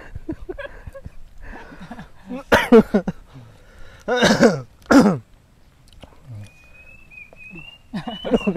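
A thin, high, steady whistled bird call begins about six and a half seconds in and wavers slightly as it rises a little in pitch. It is the uncuing, a small cuckoo that local belief calls the bird of death. Earlier, two loud bursts of men's laughter or exclamations are the loudest sounds.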